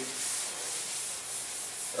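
A blackboard duster rubbing across a chalk blackboard, wiping off chalk writing: a steady scrubbing noise.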